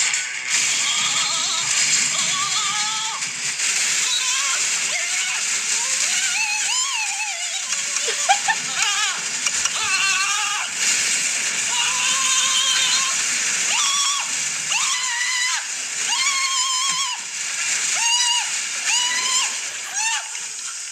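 A film clip of a man screaming while being electrocuted: a long string of held, wavering yells, one after another, over a constant electric crackling hiss, with music behind.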